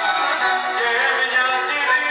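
Live Greek folk band music played through a PA: a violin playing with a voice singing over it.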